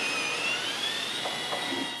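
A sustained high-pitched squeal with a rubbing hiss under it, the sound of a white packing panel being slid out of a wooden shipping crate and rubbing against it.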